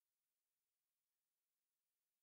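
Near silence: only a faint, even hiss.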